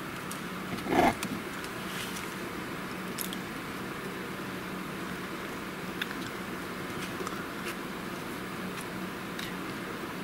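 Steady background hum with a faint low tone, broken by a brief louder sound about a second in and a few faint ticks as hands handle and press a glued hardcover book.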